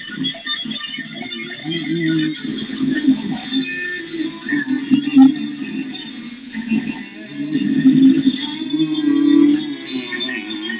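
Electric guitar playing improvised lead lines, a run of changing notes without pause.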